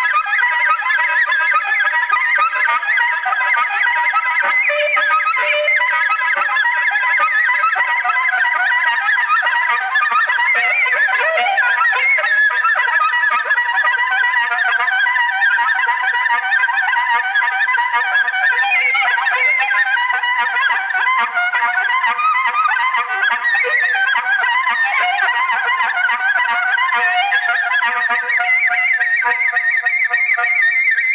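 Solo soprano saxophone playing an unbroken stream of rapid, overlapping notes, circular-breathed with no pause for breath. Several tones sound at once against a few steady held pitches.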